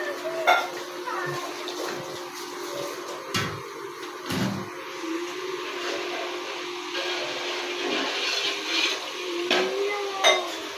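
Water poured from a pot into a large aluminium cooking pot of spiced broth, splashing into the liquid, then a ladle stirring in the pot with a few knocks against the metal.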